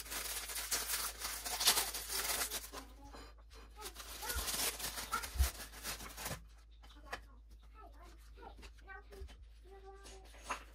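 Paper wrapping on a package of crackers being torn open and crinkled by hand, in two noisy stretches during the first six seconds, followed by quieter handling.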